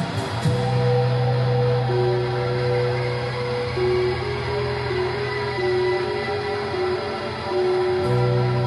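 Live band music: the drum hits stop about half a second in, leaving a held low drone with a slow line of long sustained notes above it.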